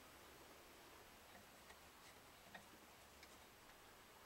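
Near silence: room tone with a few faint, scattered ticks.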